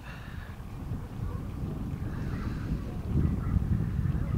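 Wind buffeting the microphone: an uneven low rumble that grows stronger about three seconds in.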